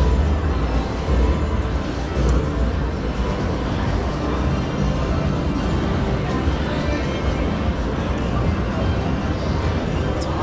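Casino floor ambience: background music over the sound system with a steady deep bass, mixed with the general din of the gaming floor and faint voices.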